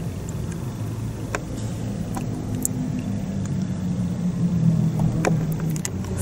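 A steady low hum inside a car cabin, with a few faint clicks.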